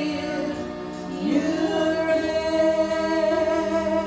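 Women's vocal trio singing a gospel song in harmony, holding long notes, with one voice sliding up into a note a little over a second in.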